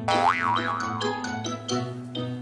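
Comic background music with a cartoon boing sound effect that wobbles up and down in pitch twice, followed by a run of short staccato notes over a steady bass line.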